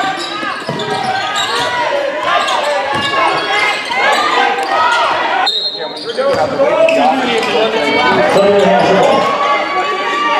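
Indoor basketball game: a ball bouncing on the hardwood court, with overlapping spectators' and players' voices and sharp squeaks and knocks throughout, echoing in the gym. The sound briefly drops away a little past halfway.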